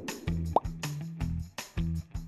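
Background music with a steady beat and bass line; about half a second in, a short rising blip sound effect plays over it.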